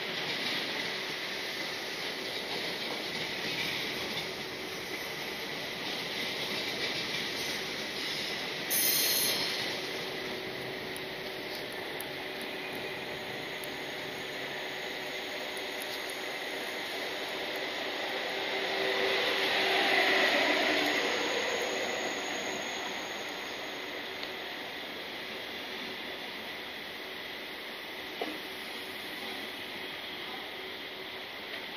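Electric passenger trains moving along a station platform: a continuous rolling hiss with a steady tone through it, swelling to its loudest about twenty seconds in as a high-speed train draws alongside. A short hiss cuts in about nine seconds in.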